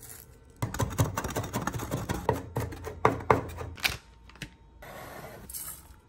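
Knife chopping on a wooden cutting board: a quick, irregular run of knocks for about three seconds, then a pause and a faint scraping near the end.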